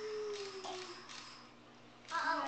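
Short breathy puffs of blowing, with one long vocal note from a baby over them that falls slightly in pitch and fades out after about a second and a half.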